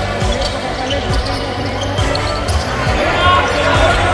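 A basketball bouncing on a hardwood court in irregular low thumps, with players' voices, over a background music track.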